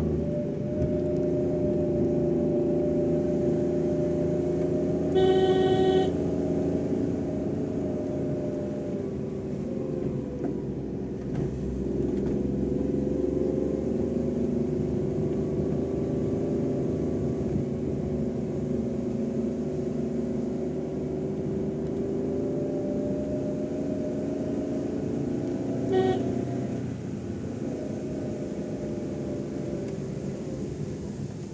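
A vehicle's engine running steadily while climbing a winding mountain road, heard from inside the cabin; its note sags about ten seconds in and picks up again. A vehicle horn sounds once for about a second early on, and gives a shorter honk near the end.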